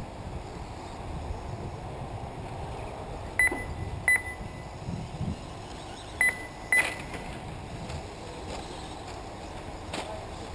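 Four short, high electronic beeps in two pairs, the first pair about a third of the way in and the second about two-thirds in, typical of an RC race lap-timing system registering cars crossing the line. A steady low background rumble runs under them.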